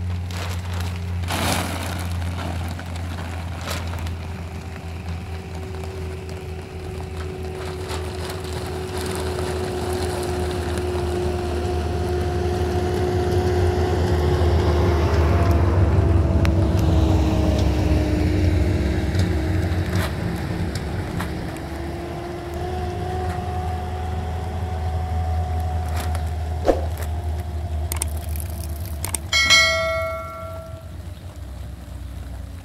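An engine humming at a distance over a steady low rumble, its pitch slowly sinking and then rising again, loudest midway. A short bell-like chime rings near the end.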